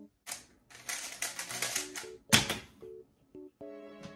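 Rapid clicking of a speedcube's layers being turned during a fast solve, with one loud knock a little past halfway, over light background music.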